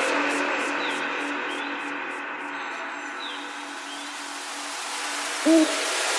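Riddim dubstep track winding down: a steady tick stops about halfway through, and a held low synth note fades under a hiss-like wash that slowly swells. Near the end a short vocal sample says 'Ooh', sliding in pitch.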